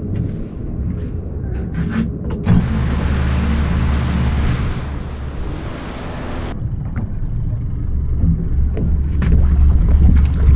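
Yamaha F150 outboard motor running as the boat moves through the water, a steady low hum. For a few seconds in the middle a loud rush of wind and water noise covers it, then cuts off suddenly.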